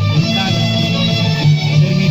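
String-band music, guitars to the fore with a violin, playing a steady dance tune.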